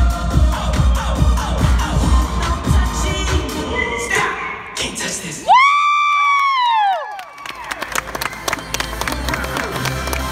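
Dance music with a heavy bass beat plays and stops about five seconds in, followed by a loud high tone that rises and falls for about a second and a half. Then audience clapping and cheering.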